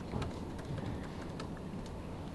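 Faint, irregular clicking of a laptop keyboard being typed on, over a steady low room hum.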